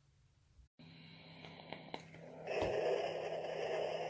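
A long breathy exhale lasting about two seconds, starting about halfway in, over a faint steady low hum.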